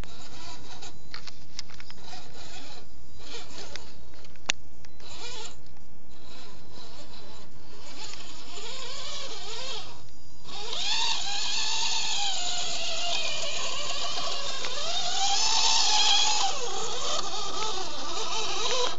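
Electric motor and gearbox of an RC scale crawler whining, its pitch rising and falling with the throttle as it climbs rock, over a steady hiss. The whine grows stronger about halfway through.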